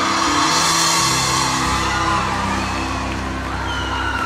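A live band holding out the last chord of a song, with a large crowd cheering and whooping over it.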